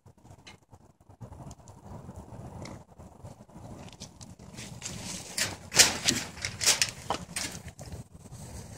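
Wood fire crackling, with irregular sharp pops that come thicker and louder in the second half.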